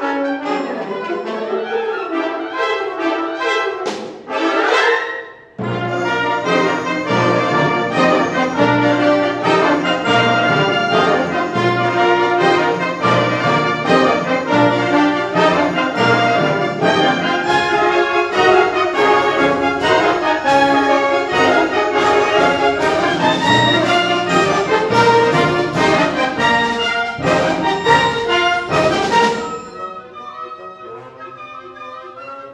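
A concert wind band playing a loud, fast passage with the brass prominent. About four seconds in the sound sweeps upward and briefly falls away, then the full band comes back in with sharp percussive strikes, and it drops suddenly to a quieter texture just before the end.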